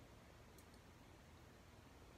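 Near silence: room tone, with one faint small click about half a second in as a small plastic phone grip is handled.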